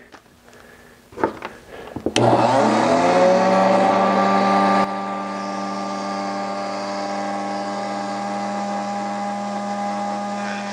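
A few faint clicks of handling, then a Livingart electric rotary carver is switched on about two seconds in. Its whine rises in pitch for a moment as it spins up, then holds steady, dropping a little in level near the halfway point.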